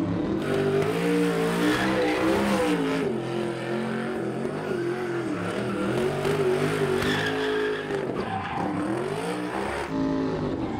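Race car engine revving hard, its pitch rising and falling again and again, with tyres squealing as the car is driven aggressively.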